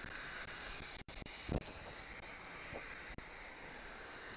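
Faint steady outdoor background noise with light wind on the microphone, a soft handling bump about a second and a half in and a small click near the end.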